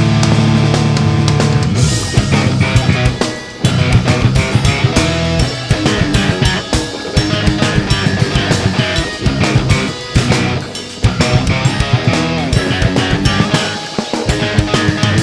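Live instrumental progressive metal band playing: electric bass, electric guitar, drum kit and keyboards. It opens on a heavy held chord, then moves into a fast, stop-start passage with short breaks.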